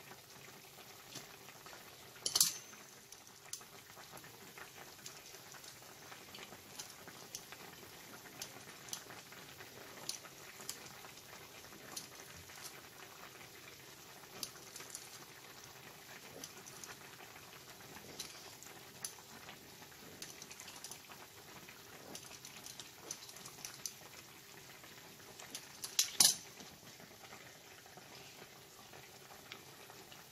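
Pan of courgette and onion simmering on the hob: faint steady bubbling with scattered small pops. Two sharper knocks stand out, one about two seconds in and one near the end.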